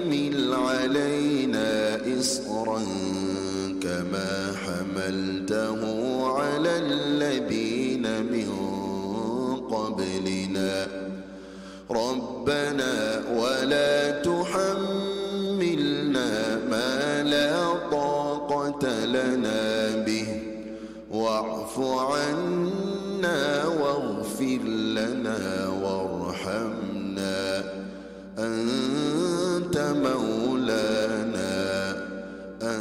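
A man reciting the Quran in melodic chant during prayer. He holds long notes that glide up and down, with three short pauses for breath between verses.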